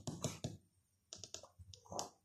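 A deck of tarot cards being handled: a quick run of light clicks, about five a second, then a short pause and a few more clicks.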